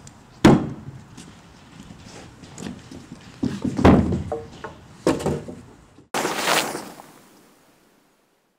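Wooden knocks of lumber being set down and shifted on a plywood deck: a sharp thunk about half a second in, a louder cluster of thuds around four seconds, and another near five. About six seconds in the sound cuts to a whoosh that fades away.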